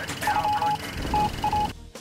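Short electronic beeps, all at one pitch, in an uneven telegraph-like pattern: the sound effect of a news-segment title stinger.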